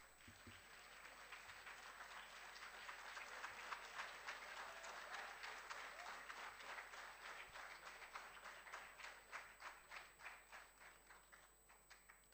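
Faint applause, people clapping their hands. It builds over the first couple of seconds, holds through the middle, then thins into scattered single claps that die away near the end.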